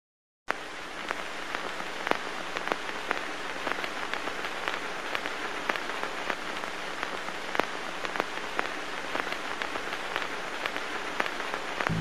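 Old-film surface noise: a steady hiss with scattered sharp clicks and pops and a faint low hum, starting suddenly about half a second in.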